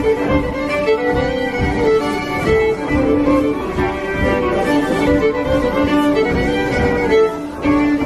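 Two fiddles playing a tune together as a live duet, bowed with continuous, shifting notes.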